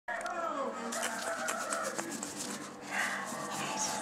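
A baby vocalizing: soft pitched coos and squeaks, the first gliding down in pitch, with a louder sound about three seconds in and a few light clicks of the camera being handled.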